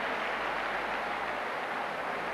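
Steady stadium crowd noise: an even wash of sound from a large audience, with no single sound standing out.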